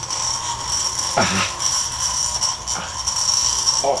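Corded electric ball grip massager running against a head, a steady high buzz with a rattle.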